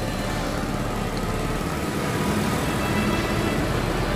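Steady road noise of a motor scooter riding along a city street among other scooters and cars.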